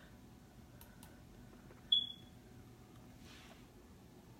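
A single short, high-pitched ping about two seconds in, fading quickly, over faint room noise.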